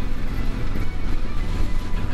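A Harley-Davidson touring bike's 1700 cc V-twin running at road speed, a steady low rumble, mixed with background music.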